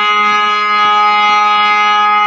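BINA harmonium sounding one steady held reed note, rich in overtones, without change in pitch.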